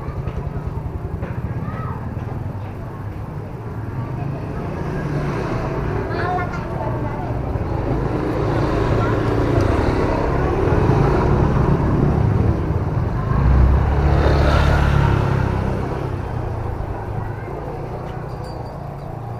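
Motor scooters riding past close by, their engine noise building to a peak about two-thirds of the way through and then fading away.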